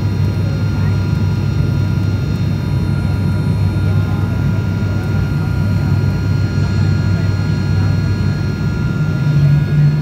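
Steady drone of a high-wing turboprop airliner's engines and propellers, heard from inside the passenger cabin on the landing approach, with a low hum and a few steady higher tones, swelling a little near the end.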